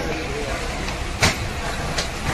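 Steady background noise inside a passenger train coach standing at a station, with one sharp click a little over a second in.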